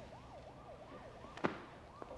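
Faint siren in the distance, a quick rise-and-fall yelp repeated about three or four times a second, with a single sharp click about one and a half seconds in.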